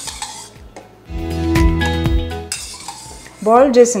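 A metal spoon clinking and scraping against a stainless steel bowl of boiled chickpeas as they are scooped out. A loud, steady hum lasts about a second and a half in the middle.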